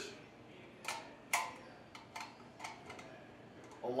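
Light metallic clicks and ticks as a steel 4-inch square extension ring is fitted onto a steel electrical box, its bottom slots sliding over the box ears and screws. Two sharper clicks come about a second in, followed by fainter ticks.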